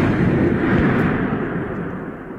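The fading tail of a deep crash or boom that closes a recorded song: a rumbling noise that dies away slowly.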